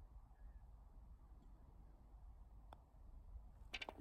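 Near silence, with one faint click a little under three seconds in: a putted golf ball dropping into the hole.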